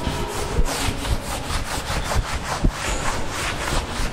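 Chalkboard duster being rubbed over a blackboard to wipe off chalk, in quick back-and-forth strokes that give a steady scratchy rhythm.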